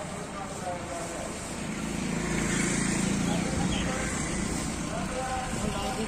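Engine of a slow-rolling police SUV coming up close, a low rumble that swells about two seconds in and eases off a little after three seconds, with people's voices in the background.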